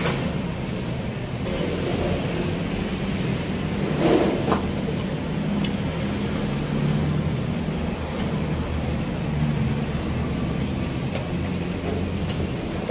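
Steady low mechanical hum, like an engine or machine running. There is a brief knock about four seconds in.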